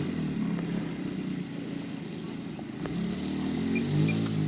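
Saito 100 four-stroke glow engine of a large radio-controlled J3 Cub model running at low throttle as the plane taxis, growing louder near the end.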